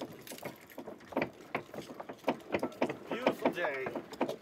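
Footsteps on wooden dock planks: a string of irregular knocks as several people walk, with faint talk in the background.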